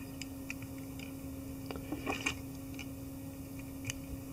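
Faint, irregular small clicks and ticks from handling a fly-tying bobbin and thread at the vise, over a steady low hum.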